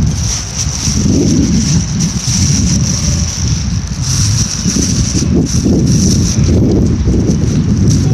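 Wind buffeting a phone's microphone with an uneven low rumble as the phone is carried about, over a steady high-pitched hiss.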